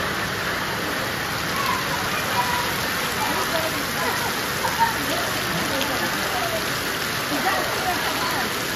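Heavy monsoon rain pouring down steadily.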